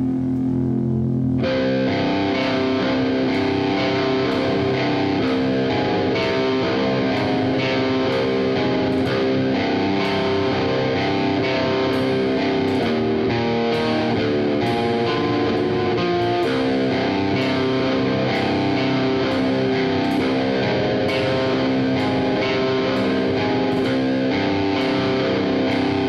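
Instrumental passage of a modern hardcore song: distorted electric guitars playing sustained chords over a steady beat, with no vocals. The fuller band sound comes in about a second and a half in.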